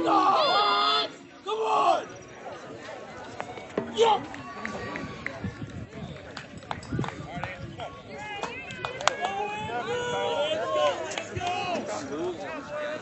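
A shot putter's loud, sustained yell as he releases the throw, breaking off about a second in, followed by another short shout. After that come scattered voices and chatter around the throwing area, with a few sharp knocks.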